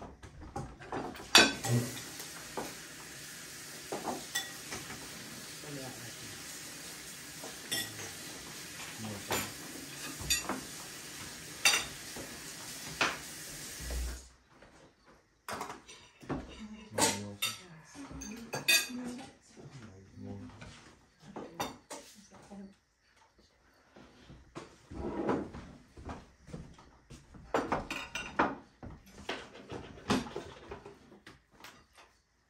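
Metal tongs, cutlery and plates clinking and scraping against a metal serving tray and dishes as meat is served out at a table. The clinks come irregularly throughout, over a steady hiss that cuts off about halfway through.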